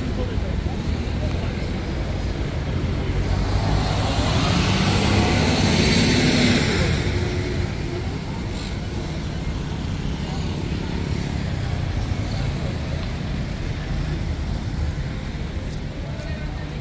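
Road traffic noise, with a motor vehicle passing by that swells and fades about four to seven seconds in.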